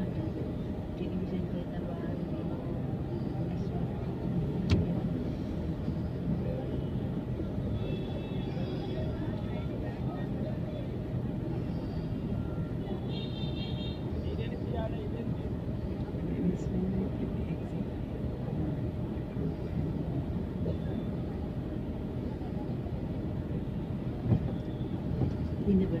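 Busy street ambience: a steady low rumble of traffic and idling three-wheeler auto-rickshaws, with crowd voices around. There is a short high-pitched tone about halfway through.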